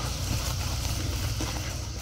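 Light breeze rumbling on the microphone, a steady low buffeting with no distinct strikes.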